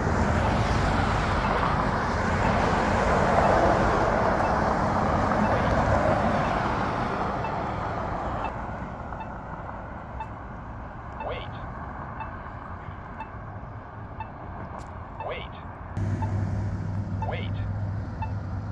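Road traffic passing a crosswalk, with a vehicle going by that is loudest a few seconds in and fades away, while the Polara N4 push button's locator tone ticks faintly and evenly. A low steady hum comes in near the end.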